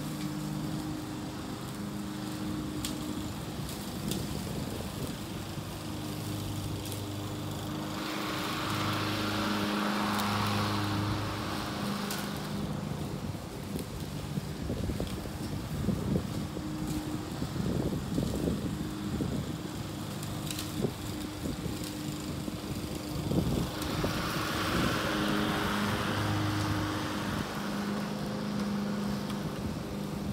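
Gas-powered Honda walk-behind lawn mower running steadily while cutting grass, its engine hum growing and fading as it moves back and forth. Twice it swells into a louder rushing noise for a few seconds.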